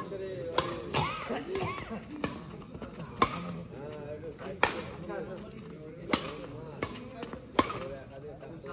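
Badminton rackets striking the shuttlecock in a doubles rally: about eight sharp cracks, roughly one every second or so, over murmuring spectator voices.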